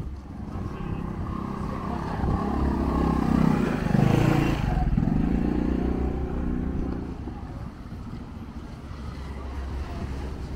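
A motor engine passes close by. Its pitch and loudness rise to a peak about four seconds in, then the pitch drops and the sound fades away, over low wind noise on the microphone.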